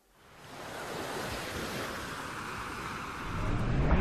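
Recorded sound of ocean surf fading in as a steady wash, opening a song's backing track. Near the end, music starts to swell in over it.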